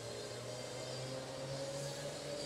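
Slingshot ride machinery running with a steady hum whose pitch slowly rises.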